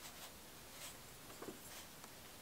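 Faint strokes of a watercolour brush on sketchbook paper: a few short, soft brushing sounds.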